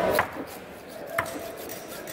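A large knife chopping through barracuda flesh onto a wooden cutting block: two strikes about a second apart, the first louder.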